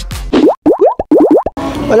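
Cartoon sound effect closing a logo jingle: a quick string of about six rising "bloop" pitch slides, all in just over a second, with short silent gaps between them.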